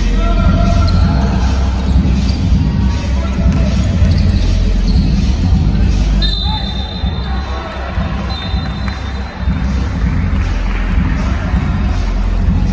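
Live basketball play in an echoing gym: the ball bouncing on the hardwood-style court, players' voices and footsteps over a steady hall rumble. Two short high steady tones come about six and eight seconds in.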